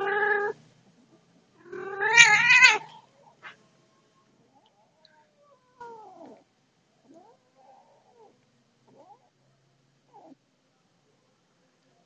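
Domestic cats caterwauling during a mating encounter: a loud yowl at the very start, then a longer, louder yowl with a wavering pitch about two seconds in. After that come a few faint short mews.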